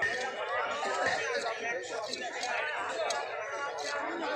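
Several people chattering, voices overlapping, with a few brief sharp clicks.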